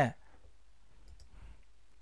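A few faint clicks of a computer mouse against quiet room tone, about a second in.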